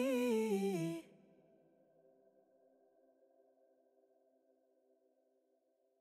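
A voice singing the end of a vocal phrase, stepping down in pitch and stopping abruptly about a second in. Faint sustained tones linger after it and fade to near silence.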